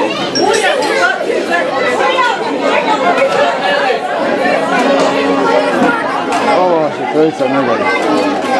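Crowd of guests chattering, many voices talking over one another in a large hall, with no music playing.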